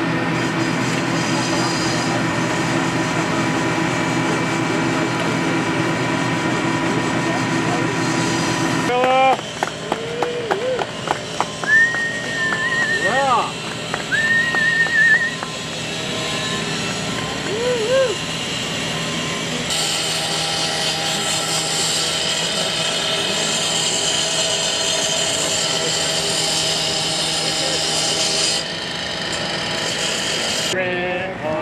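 Power cutting tool cutting metal, running steadily. People call out over it between about 9 and 18 seconds in, and a louder, higher hissing cutting noise takes over from about 20 seconds in.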